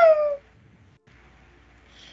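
A cat meowing once, a single call that falls in pitch and lasts about half a second at the start.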